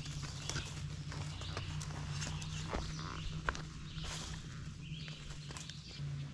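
A dog's footfalls crunching and scuffing through dry fallen leaves as it runs, a quick irregular series of light clicks, over a steady low hum.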